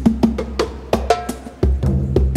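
Fast hand drumming on mounted frame drums, sharp strokes at about seven a second with a short break near the end. Low sustained bass notes sound underneath.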